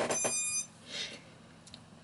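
Brushless motors on a quadcopter that has just had its LiPo battery plugged in, playing the ESC's brief electronic startup beep tones as it powers up.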